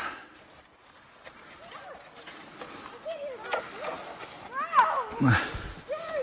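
Faint, indistinct children's shouts and calls, several short rising-and-falling cries, with a sharp knock near the end and a brief low rumble just after it.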